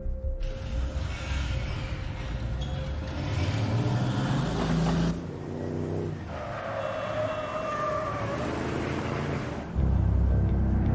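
Car engine and traffic noise on a film soundtrack, the engine rising in pitch as it speeds up, then cut off suddenly about halfway through. A quieter stretch with held tones follows.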